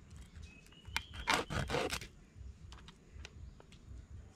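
Large knife cutting and scraping a small big-eye scad on a wooden chopping block: a few rough scraping strokes a little over a second in, with light clicks of the blade on the wood.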